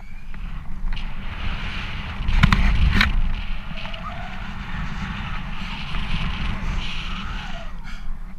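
Wind buffeting a GoPro action camera's microphone while a rope jumper swings on the rope, a steady rumble with hiss. Two sharp knocks come about two and a half and three seconds in.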